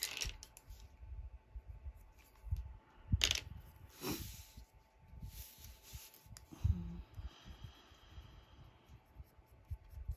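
Colored pencils and paper being handled on a desk: a few sharp clicks and taps as a pencil is set down and picked up, a short rustle as the page is shifted, then light scratching of a pencil stroking the paper near the end.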